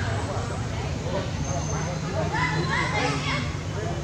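Indistinct voices, with a run of high, arching calls about two to three seconds in.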